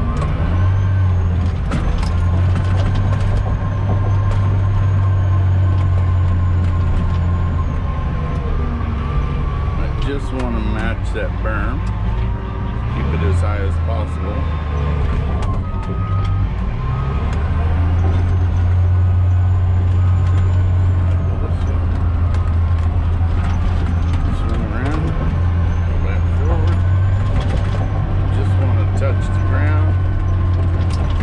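Caterpillar D10T dozer's diesel engine running under load, heard from inside the cab, with scattered clanks from the tracks and blade. The engine note eases off for a few seconds about midway, then pulls steady again.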